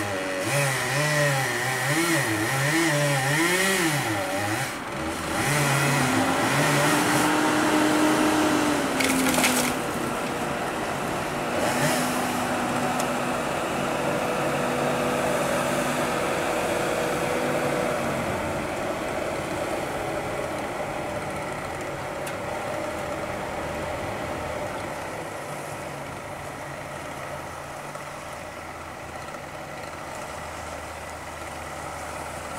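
A two-stroke chainsaw cutting into a standing tree trunk, its engine pitch wavering up and down under load for the first few seconds. It then runs at a steadier speed, with two short sharp sounds near the middle, and slowly fades away over the last ten seconds.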